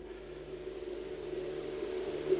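Steady low hum with a faint hiss beneath it, a background noise floor with no speech.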